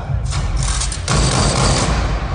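Film trailer sound effects played loudly over a hall's speakers: two surges of rushing noise, the second louder, over a heavy low rumble.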